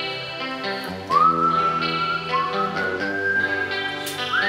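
Instrumental karaoke backing track of a rock song: guitar chords over a low bass note. About a second in, a high, pure-toned lead melody enters. Each of its two notes slides up into a long held pitch.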